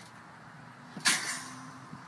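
A trampoline bounce: the mat and springs take one landing, heard as a single brief rushing noise about a second in over a faint background.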